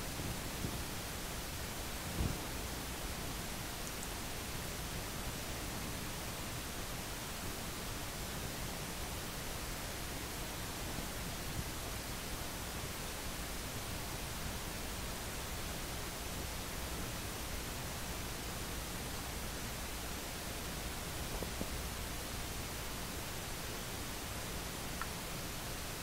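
Steady, even background hiss of room tone, with one soft low knock about two seconds in.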